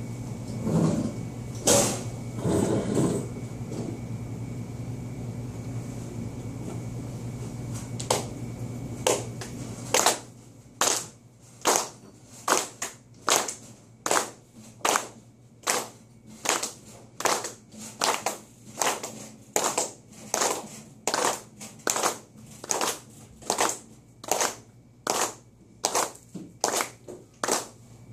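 People clapping their hands together in a slow, steady rhythm, about two claps a second, starting about ten seconds in. Before that, a steady room hum and a few brief, irregular sounds.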